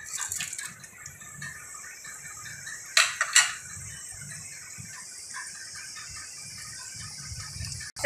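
Chopped green chillies and whole spices sizzling in hot oil in a clay handi, a steady crackle. Two sharp knocks come about three seconds in.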